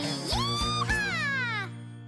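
A high, childlike cartoon voice sings one long note of a children's song that swoops up and then glides down, over the backing music. The song then fades out near the end.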